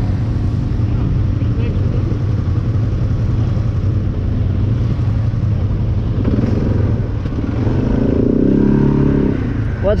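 ATV engine idling steadily, with a stronger pitched sound rising over it around eight to nine seconds in.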